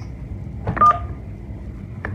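A single telephone keypad tone (DTMF beep) about a second in, two pitches sounding together briefly, over a low steady hum: a number being dialled on a phone.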